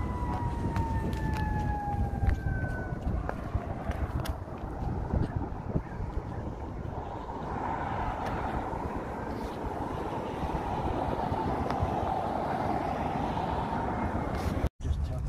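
Street traffic rumble with wind buffeting the microphone. In the first three seconds a distant siren's wail slides slowly down in pitch and fades out, and from about halfway through a steady rushing noise from passing traffic swells.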